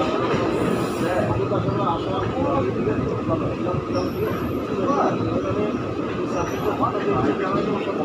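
Express passenger train running at speed through a station, heard from aboard: a steady loud rumble of wheels on rail, with brief high wheel squeals about halfway through and again a little later.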